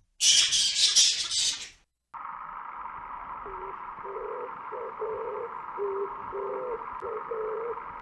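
A flying fox screeching in one harsh, high-pitched burst lasting about a second and a half. After a short gap comes a steady hissing sound with short, low hooting notes about twice a second.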